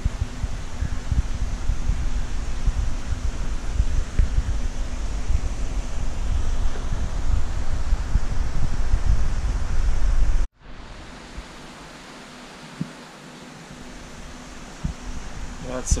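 Large aquarium's pumps and circulating water: a steady hiss with a faint hum and an uneven low rumble. About ten seconds in, the sound cuts off abruptly and a quieter hiss follows.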